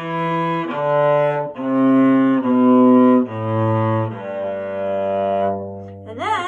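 Cello bowed one note per stroke, descending the G major scale in steady steps and ending on a low G that is held for about two seconds.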